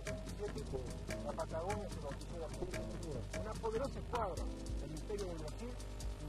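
A voice speaking indistinctly over background music, with sharp clicks scattered through it.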